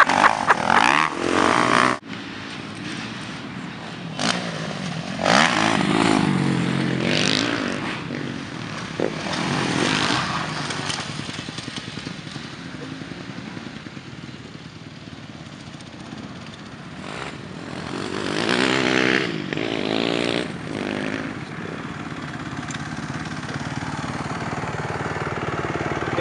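Motocross bike engine revving up and down as the bike is ridden round a dirt track, with louder surges of throttle about five, ten and nineteen seconds in.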